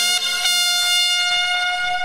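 Brass section of a Yucatecan jarana band holding one long, steady chord with trumpets on top after a sung line, easing off slightly near the end.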